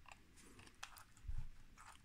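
Faint small clicks from a Leica II camera being handled and its top knob being set, with a soft low bump a little past halfway.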